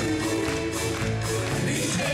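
Live country band playing an instrumental stretch between sung lines: acoustic guitars, electric bass, keyboard and fiddle over a steady beat.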